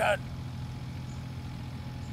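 Steady low hum of an idling engine, even and unchanging.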